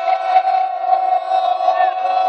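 A group of men's voices holding one long chanted note together, with a few voices sliding in pitch against it near the end.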